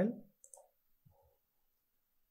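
A few faint computer-mouse clicks about half a second in, then a soft low knock, over quiet room tone.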